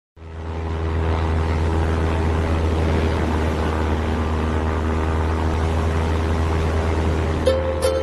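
SOCMA 28-ton container forklift's diesel engine running steadily with a deep drone. Music comes in just before the end.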